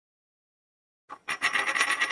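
Complete silence, then about a second in a coin-flip sound effect starts: a metal coin spinning and rattling in rapid ringing strokes.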